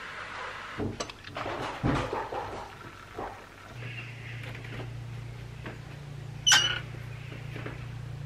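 A metal spoon clicking and scraping against an instant-coffee tin and a china teacup. After that comes a low steady hum, and about six and a half seconds in a single loud, sharp metallic click from a door latch.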